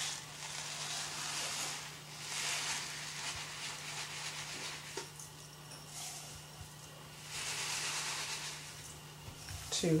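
Dry rice poured from a cardboard box into a pot: a hissing rattle of grains in several pours of a second or two each. A steady low electrical hum lies underneath.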